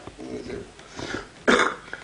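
A man coughs once, a short loud cough about one and a half seconds in, after a few faint spoken syllables.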